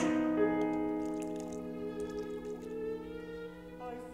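Chamber orchestra holding a soft sustained chord of several steady tones that slowly fades, with a few light, short high notes over it.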